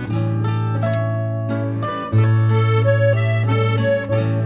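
Tyrolean Stubnmusi folk ensemble playing a Ländler, a dance tune in three-four time: accordion with held bass notes and chords over plucked strings such as guitar. The music steps up in loudness about halfway through.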